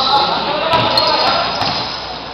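A basketball bouncing on an indoor court during a game, with voices in the background, echoing in a large gymnasium.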